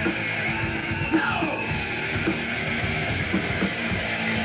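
Heavy metal band playing live: distorted electric guitars over drums, loud and continuous.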